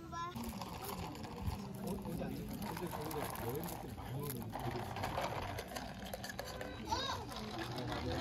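Indistinct background talk of several people, with no words clear enough to make out.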